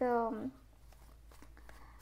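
A woman's voice trailing off, then faint soft clicks and rustles of a tarot deck being shuffled by hand.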